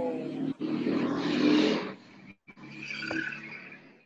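Loud rushing noise with a steady low hum over the video-call audio, the background interference the students complain of. It drops out twice, briefly, and cuts off abruptly at the end.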